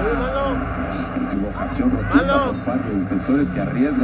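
Mostly speech: a man's voice talking continuously, most likely the Spanish-language football commentary from the match broadcast, over a steady low rumble.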